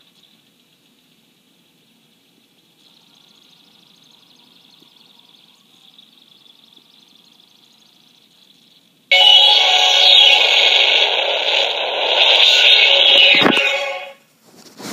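A faint, steady high whine while the PVD disc loads in a VideoNow XP player, then about nine seconds in the player's small built-in speaker starts playing loud intro music, which stops shortly before the end.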